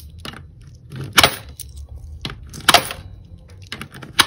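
Coins clinking as they are handled beside a digital coin-counting jar: a few short metallic clicks, the two loudest about a second in and just before the three-second mark, with softer taps between.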